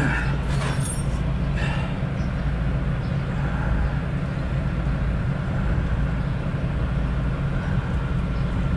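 A large diesel engine idling steadily, a constant low hum, with a couple of light knocks in the first second.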